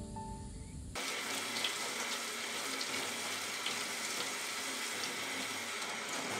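Kitchen faucet running steadily into a stainless steel sink while a whole pineapple is rinsed under the stream, the water splashing off the fruit. The running water starts suddenly about a second in, cutting off a few notes of soft music.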